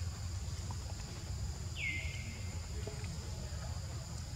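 Steady, high-pitched drone of insects, over a low rumble. About two seconds in there is a single short call that slides down in pitch and then levels off.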